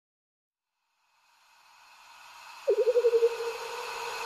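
Synthesized intro sound effect: a hissing swell fades in from silence, then about two-thirds of the way in a single mid-pitched tone strikes, pulsing rapidly at first and then holding steady as it slowly fades.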